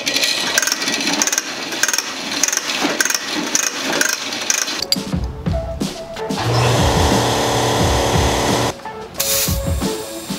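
Yellow air hose pulled off a spring-loaded wall reel, the reel rattling and clicking as it turns. Later a loud steady hum runs for about two seconds.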